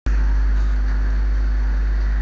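A steady, unchanging deep hum with a faint hiss over it, the background noise of the recording.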